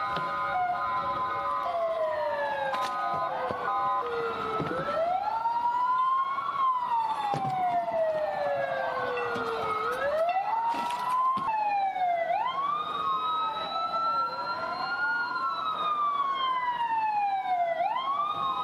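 Several police vehicle sirens wailing at once, out of step with each other, each sweeping slowly up and down in pitch over a few seconds.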